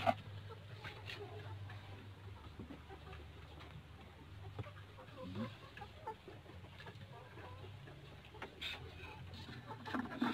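Chickens clucking faintly in the background, with a brief sharp click right at the start.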